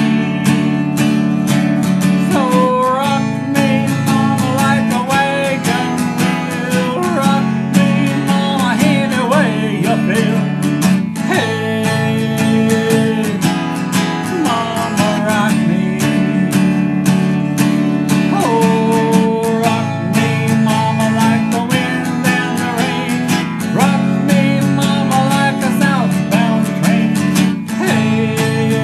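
Cutaway acoustic guitar strummed in a steady rhythm, ringing chords played right through without a break.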